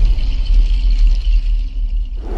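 Deep sound-design rumble from an animated logo intro, with a faint hiss above it, easing slightly near the end.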